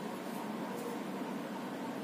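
Steady background hiss of a small room, with no distinct sound in it.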